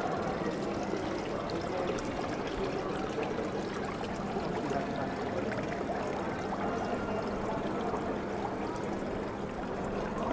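Water welling up in a granite street fountain's bowl and running over its rim into the drain grate below, a steady trickle.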